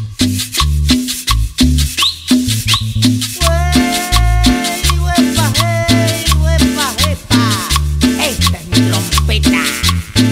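Cumbia band playing an instrumental passage: a steady percussion beat over a bass line, with a lead melody coming in about three and a half seconds in, playing long held and bending notes.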